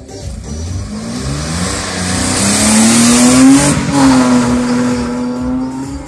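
A rally car accelerating hard through the gears and passing close by, its engine note rising in steps and then dropping in pitch as it goes past, about four seconds in.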